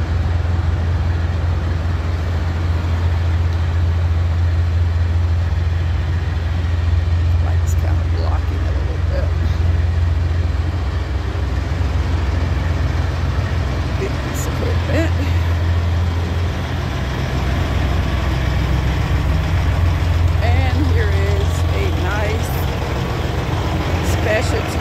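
Heavy diesel truck engine idling with a steady low drone.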